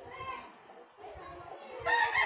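Faint children's voices in the background, then a rooster starts crowing loudly just before the end.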